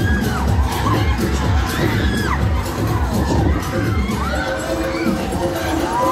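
Riders on a swinging, spinning fairground thrill ride screaming and shouting, over and over, above the ride's loud music with a thumping beat.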